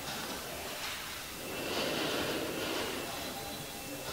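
A person's slow breath, swelling and fading about halfway through, over a steady hiss.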